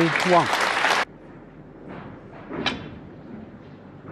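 Snooker arena audience applauding with a voice calling out over it, cut off abruptly about a second in. Then low room noise with one sharp knock past the middle.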